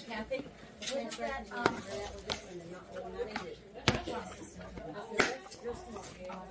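Snap latches of a hard plastic first aid kit case being worked open by hand, with several sharp plastic clicks and knocks; the sharpest come about four and five seconds in.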